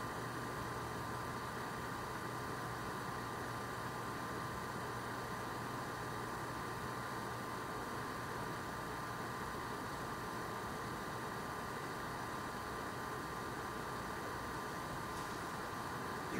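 Steady background hiss with a faint hum and a thin steady tone, level and unchanging throughout; no brush strokes or other distinct events stand out.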